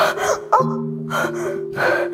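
A woman sobbing, with several short gasping breaths in the two seconds, over background music holding long low notes.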